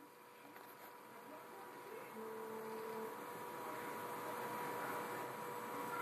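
Faint electrical hum and hiss from a just-powered-on Rane TTM 57 DJ mixer setup, growing a little louder about two seconds in, with a short soft tone at about two to three seconds.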